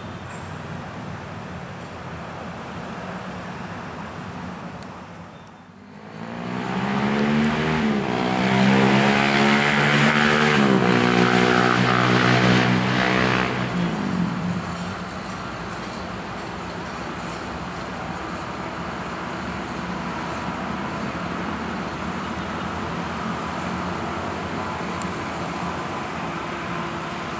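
Steady road traffic noise. About six seconds in, a motor vehicle engine comes up loud and passes close, its pitch rising and falling for about eight seconds before it fades back into the steady traffic.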